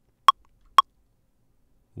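Ableton Live's metronome counting in before a recording: two short, pitched clicks half a second apart in the first second, the last beats of a four-beat count-in, then quiet.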